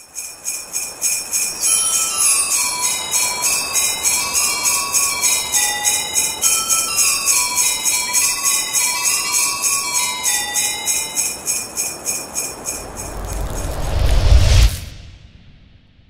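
Christmas-style jingle: sleigh bells shaken in a steady beat, about four a second, under a short tinkling melody. Near the end a rising swell builds to a deep hit, and the music stops suddenly.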